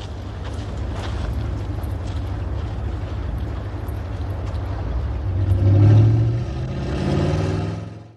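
An old Cadillac hearse's engine running with a steady low rumble. It swells and revs up about six seconds in, then cuts off abruptly at the end.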